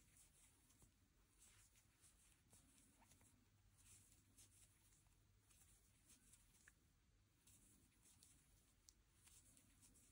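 Near silence with faint, brief scratchy rustles: a crochet hook pulling cotton yarn through stitches while single crochet is worked along an edge.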